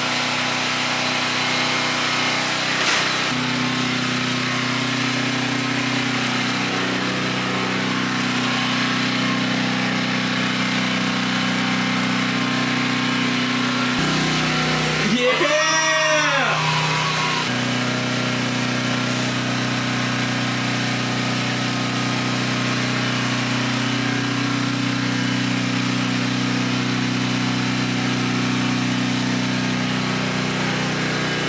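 Portable gasoline generator running with a steady hum, powering a refrigerator through an extension cord. About 15 to 17 seconds in, a person's voice cheers once, rising then falling in pitch.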